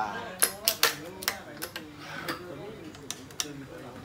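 Sharp, irregular clicks and snaps, about eight in all, from a badminton racket being strung on a stringing machine at high tension (32 lb) as the string and clamps are worked by hand.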